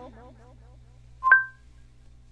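A single short electronic beep of two steady tones sounding together, like a telephone keypad tone, about a second in, over a low steady hum.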